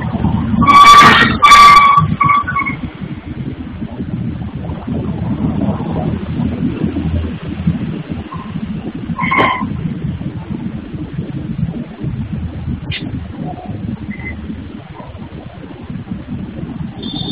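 Noise from a granite tile workshop, picked up by a security camera's microphone. Two short, loud, shrill screeches come about a second in, over a steady low machinery rumble.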